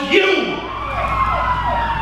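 Police siren starting about half a second in, a wailing tone sliding slowly downward with a quicker rising-and-falling whoop repeating beneath it.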